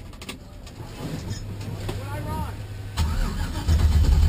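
A car engine starts and runs with a steady low rumble that comes in about a second in and gets noticeably louder near the end, with voices over it.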